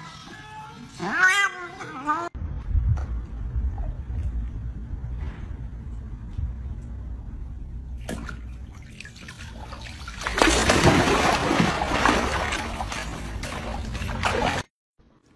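A cat gives a short meow that bends up and down in pitch about a second in. Then there is a low steady rumble outdoors. From about ten seconds a dog goes into a swimming pool, and several seconds of loud splashing follow as it paddles to the edge.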